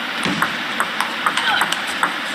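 Table tennis ball clicking off the paddles and the table during a fast rally, several sharp clicks in quick succession in the second half.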